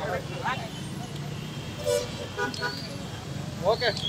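Busy street traffic noise with a steady low hum, voices of a crowd talking, and short horn toots a little past the middle.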